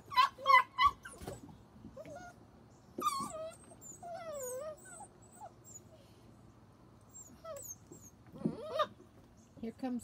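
Young standard poodle puppies whining and yipping: a quick run of short high yips in the first second, then long wavering whines about three seconds in, and scattered squeaks later. They are crying for attention from their person.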